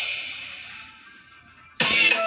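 The end of a hip-hop track played from a TV: its last bright, hissy hit fades away over nearly two seconds. A new loud sound cuts in near the end as the channel moves to its next segment.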